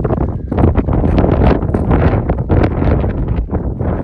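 Mountain wind buffeting the microphone: loud, gusty rumbling noise that swells and dips throughout.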